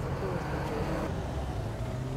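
Street ambience: a steady low rumble of vehicle engines with faint, indistinct voices of people talking.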